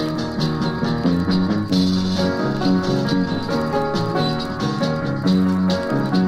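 Instrumental break of a 1970s Indian folk song: acoustic-guitar-led backing with sustained pitched notes over a steady rattling shaker rhythm.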